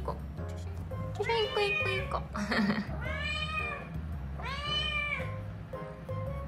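A kitten meowing: three long, high meows that rise and fall, one after another, over background music.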